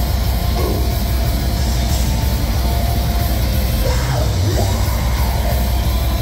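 Heavy metal band playing loudly on stage: electric guitar, bass guitar and drums, with shouted vocals that rise and fall a couple of times.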